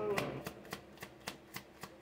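A deck of tarot cards being shuffled by hand: a quick, even run of card slaps and riffles, about five a second.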